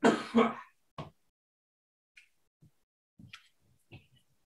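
A man clearing his throat: two short rasps in quick succession, then a fainter one about a second later.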